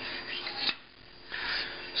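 A plastic ruler and marker rubbing and scraping across paper on a wooden tabletop, with one sharp tap a little under a second in, between two stretches of rubbing.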